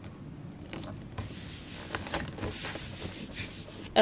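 Hands pressing and smoothing a printed sticker sheet down onto a sticky Cricut cutting mat, the paper rubbing in a rustling scrape that starts about a second in and runs until just before the end.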